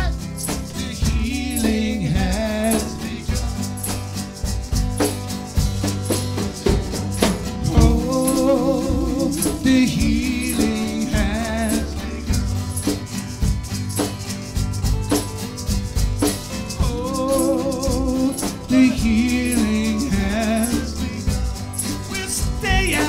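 Live band playing an instrumental break: acoustic guitar, electric guitars and a drum kit keeping a steady beat with regular cymbal ticks, under a lead melody line with vibrato.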